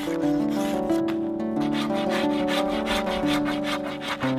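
A hand tool rasping and shaving a yew bow stave in repeated strokes, wood scraping against steel. Under it runs background music with a plucked-string melody.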